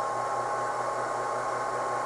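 Goal Zero portable power station with its inverter on, giving a steady fan-like hiss and a faint steady high whine.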